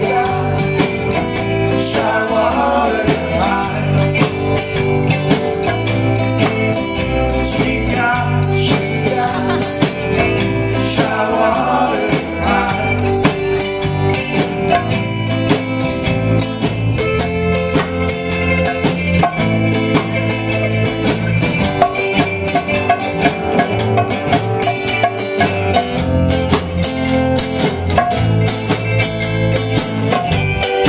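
Live acoustic band music: a strummed acoustic guitar and a mandolin over an electric bass and hand-played conga drums, in a steady rootsy groove.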